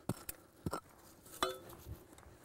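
Metal-headed digging tool chopping into packed red clay soil: a few short knocks and scrapes, with one sharper metallic clink that rings briefly about one and a half seconds in.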